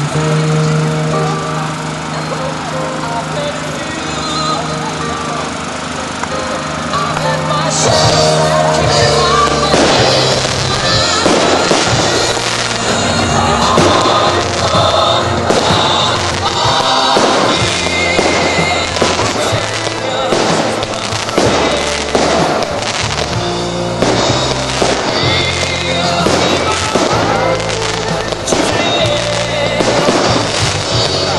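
Music with long held notes; about eight seconds in, fireworks begin going off over it, a dense run of bangs and crackles from aerial shells that keeps on through the rest.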